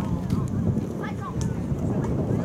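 Wind buffeting the microphone in a steady low rumble, with distant players' voices calling out across a soccer field in short shouts.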